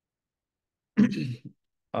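A man clears his throat once, a short rough sound about a second in.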